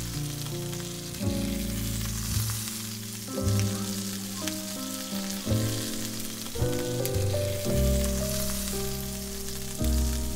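Chorizo-topped bread halves frying in olive oil in a pan, sizzling steadily, under background music with a melody.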